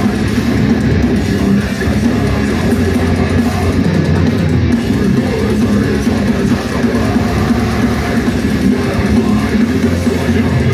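A heavy metal band playing live: loud distorted electric guitars and drum kit, steady and dense throughout, heard from within the audience.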